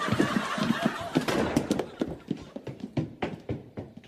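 Several people's quick, hurried footsteps as they run in shoes across a hard tiled floor. The steps thin out and fade away near the end.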